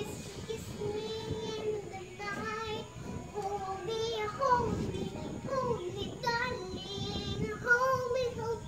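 A young girl singing a song, holding some notes and sliding between others.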